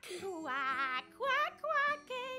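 A cartoon duck's voice singing a lullaby in short phrases with a wide, wavering vibrato, the first phrase sliding downward, over soft held backing notes.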